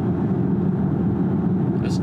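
Steady road and tyre noise inside the cabin of a moving VinFast VF8 electric SUV: an even, low rumble with no engine note. A voice starts right at the end.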